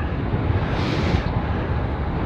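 Steady, low wind rumble on the microphone of a camera riding on a moving road bike, with a brief hiss about a second in.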